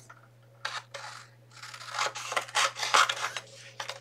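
Scissors snipping through a printed sheet of paper, with the sheet rustling as it is handled. The snips are sparse at first and come in a quicker run in the second half.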